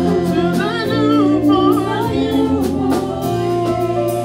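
Gospel praise-and-worship song: a lead vocalist and backing singers over instrumental accompaniment with a steady beat, one voice wavering through a run in the middle.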